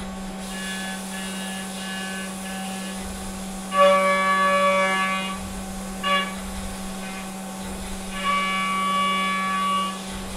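Brother X700S1 CNC mill cutting 7075 aluminum: the spinning cutter gives a steady high-pitched tone that comes and goes as the tool engages the part. It is loudest from about four seconds in, with a short blip near six seconds and another loud stretch near the end, over a steady low machine hum.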